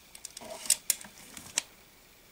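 A plastic bottle of paint thinner being handled: a scatter of small taps and three sharp clicks.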